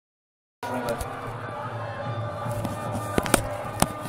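Background sound of a televised football match, a steady crowd and broadcast hum, starting after a brief silence; three sharp clicks near the end.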